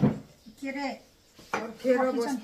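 Ceramic plates clinking as a stack of used plates with a bowl on top is lifted from the table, one sharp clatter at the very start, followed by voices talking.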